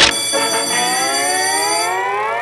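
A rising electronic tone, a sustained pitched note gliding slowly upward for about two seconds over steady high overtones: a TV programme's title-card transition sting.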